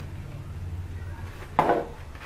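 Skincare bottles knocking together in a cardboard box as they are handled: one brief clatter about a second and a half in, over a low steady hum.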